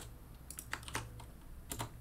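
A few faint, scattered computer keyboard keystrokes, about four clicks in two seconds.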